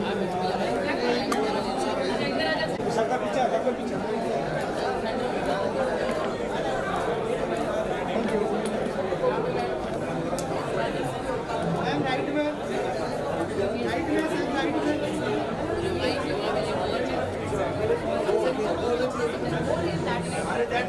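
A crowd of people talking at once: steady, overlapping chatter with no single clear voice.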